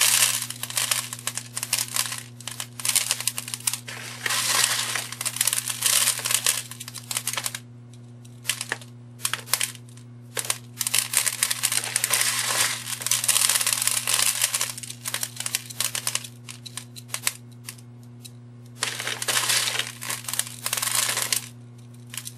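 Plastic bag crinkling and small craft rocks rattling and scattering onto a tray as they are poured and pressed onto a candle. The sound comes in several bursts with short pauses between.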